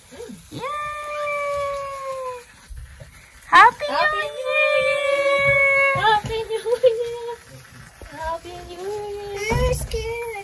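High-pitched voices in long, drawn-out held cries. There are two steady ones of about two seconds each, then a wavering, up-and-down one near the end.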